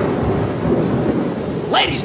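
Thunderstorm sound: a steady rush of heavy rain with low rumbling thunder underneath, cut in suddenly just before and held at an even level until a man's voice starts near the end.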